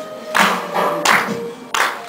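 A teenage vocal group's song with hand claps keeping a steady beat, three claps in two seconds, over a held sung note.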